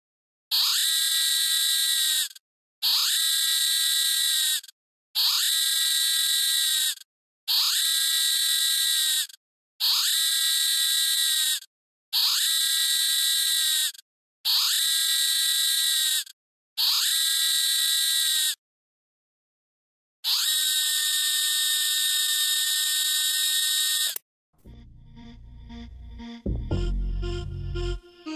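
A harsh electronic buzzer tone, sounded eight times in a steady rhythm about every two and a half seconds, each lasting about two seconds with a short rising start. After a pause, one longer buzz of about four seconds, then low music begins faintly near the end.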